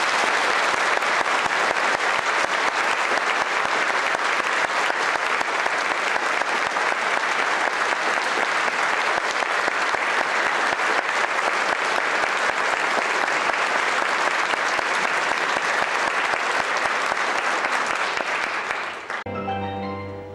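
Audience applauding steadily for about nineteen seconds, then stopping fairly suddenly as the orchestra begins playing near the end.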